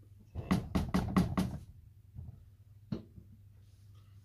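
Plastic stick blender head knocked against the rim of a plastic jug of soap batter, about five quick knocks in a row to shake the batter off, followed by a single sharper knock about a second and a half later.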